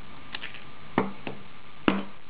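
Scissors cutting through a thick wad of accordion-folded paper: a few short, sharp snips, the two loudest about a second apart, one midway and one near the end.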